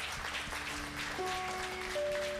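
Soft live band music: held chord notes that change to a new chord about a second in, with light scattered applause from the congregation underneath.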